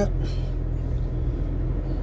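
Car interior noise while driving slowly: a steady low engine and road hum heard from inside the cabin.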